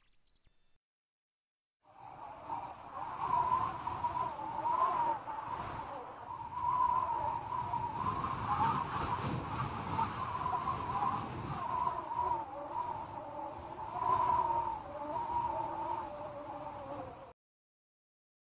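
A chorus of howling canines, several long wavering howls overlapping. It starts about two seconds in and cuts off suddenly near the end.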